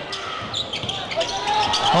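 Basketball being bounced on a hardwood court during live game play, heard as scattered short knocks under faint voices in the arena.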